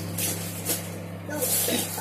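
Plastic packaging rustling as packs are handled, over a steady low hum, with a faint voice in the background near the end.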